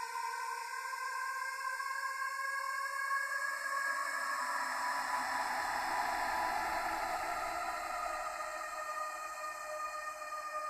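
Film-score music: several held high electronic tones. A noisy swell joins them about three seconds in, is loudest around the middle and eases off toward the end.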